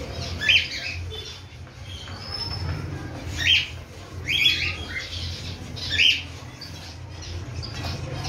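Cockatiels at a shared food dish giving four short, loud calls: one soon after the start, two close together in the middle, and one more a little later, over a steady low hum.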